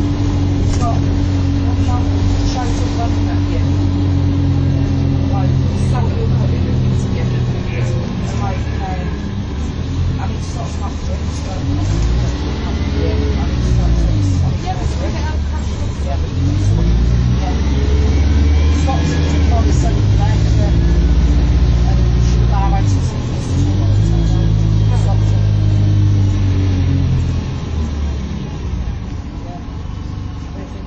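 MAN 18.240 bus's diesel engine heard from inside the saloon while driving. The engine note rises and falls several times in the second half as the bus accelerates and eases off, with rattles from the body over the top.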